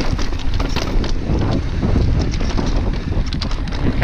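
Mountain bike riding over rough, rocky trail: wind rumbling on the microphone, with many small rattles and knocks from the bike as it jolts over the rock.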